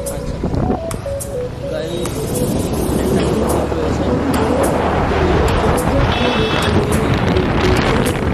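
Wind and road noise from a moving motorcycle, growing louder over the first few seconds, with a melody of music running underneath. A short high beep sounds about six seconds in.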